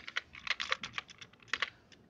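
A quick run of keystrokes on a computer keyboard. The clicks come thick in the first second, then a few more follow more slowly.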